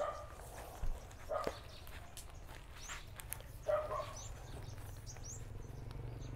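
Quiet outdoor background with three brief, faint animal calls spread over the first four seconds, and a soft knock about a second in.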